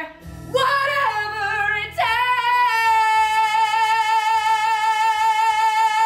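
A woman belting the end of a musical theatre song: a short sung phrase, then one long high note with vibrato, held for about four seconds.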